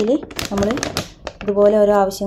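A woman talking, with a thin clear plastic zip-lock bag crinkling and rustling in her hands in short sharp bursts, mostly in the middle between her words.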